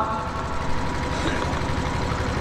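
A steady engine-like running noise with a fast, even pulse and a faint steady hum underneath.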